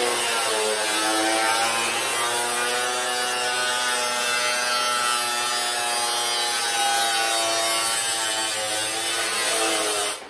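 Handheld angle grinder with a cutting disc slicing through a painted profiled metal roofing sheet. It makes a continuous grinding whine over a harsh hiss, and the pitch drifts slightly as the disc loads in the cut.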